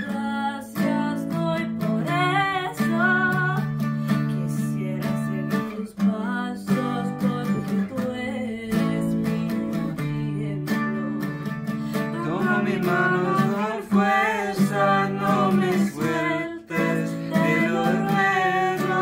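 Twelve-string acoustic guitar strummed in a steady rhythm, accompanying live singing.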